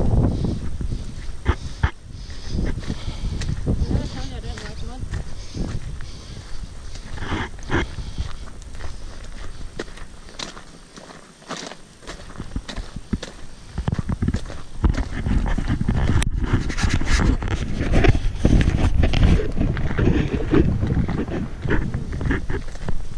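Boots trudging through thick, sticky flood mud, a run of irregular dull steps and crunches. A low rumbling noise on the microphone grows louder in the second half.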